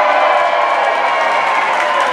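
Theater audience cheering and whooping with some applause, answering a shout-out from the stage.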